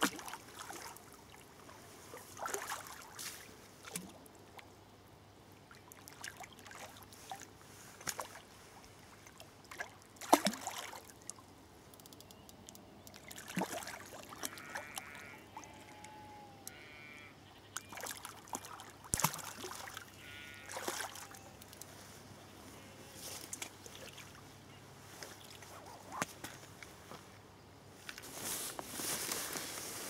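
Quiet riverbank ambience: a faint background of moving water, with scattered knocks and rustles. Sheep bleat faintly a few times around the middle.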